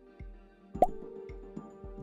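Quiz-show thinking music with held tones over a soft, steady beat. A short rising 'bloop' sound effect pops in a little under a second in.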